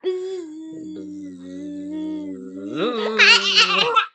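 A long, held, droning vocal noise imitating a bug coming in, rising in pitch near the end. It is followed by a young boy's high-pitched laughter as he is tickled.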